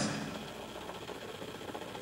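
A pause in speech: faint, steady room noise with no distinct sound.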